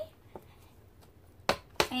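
Quiet room tone, then a couple of sharp clicks about a second and a half in as a sheet of watercolor paper and the sketchbook are handled.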